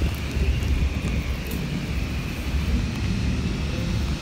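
Steady low rumble of wind buffeting the microphone on an open riverbank, under a faint, even distant drone.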